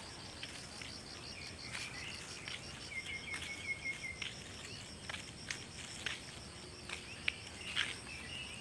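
Insects chirping in a steady, high, evenly pulsing rhythm, with a thin high whine beneath it. About three seconds in, a short twittering trill of quick notes, like a small bird, is heard. Scattered short clicks and taps come through, the sharpest near the end.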